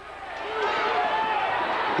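A gymnasium crowd's yelling and cheering swells quickly from quiet to loud within the first second and holds, as a long shot is in the air at the buzzer.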